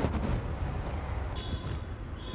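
A low steady rumble of background noise, with faint rustling as a silk saree is drawn up and draped over the shoulder. Faint steady high tones join about one and a half seconds in.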